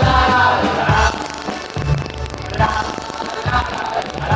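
Live band playing loud music through the PA, with drums and keyboard. The fullest sound is in the first second, and it is lighter after that.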